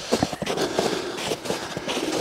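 Footsteps crunching through snow, an irregular run of small crunches and crackles as someone walks.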